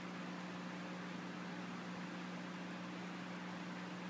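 Room tone: a steady background hiss with a low, even hum and no distinct sounds.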